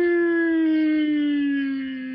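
A man's voice holding one long, drawn-out call that slowly falls in pitch, an excited exclamation over the card just pulled.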